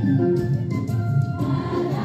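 A group of voices singing a song together in chorus, with notes held and moving steadily.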